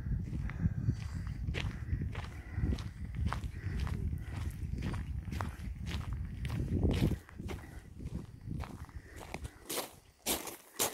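Footsteps crunching on a gravel path, about two steps a second, over a low rumble that drops away about seven seconds in.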